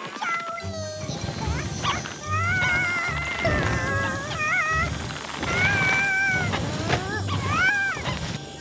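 High-pitched, wavering cartoon-ant vocal noises, strained grunts and squeaks in several bursts, with background music underneath.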